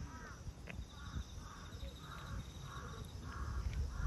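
A crow cawing over and over, a run of short caws about two a second starting about a second in. Under it are close, irregular smacking and chewing sounds of a cat eating wet food.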